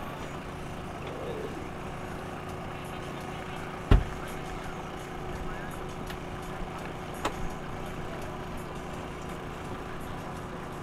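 Steady engine hum with a few faint steady tones, with one loud thump about four seconds in and a couple of small clicks about seven seconds in.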